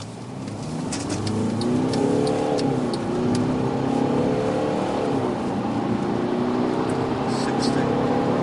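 Heard from inside the cabin, the Mercedes C250 CDI's four-cylinder twin-turbo diesel pulls hard under acceleration, its pitch rising steadily. The automatic gearbox upshifts twice, once about a third of the way in and again about two-thirds in, each shift dropping the pitch before it climbs again.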